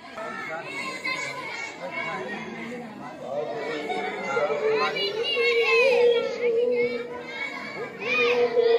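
Many children's voices chattering and calling out at once, louder from about halfway through.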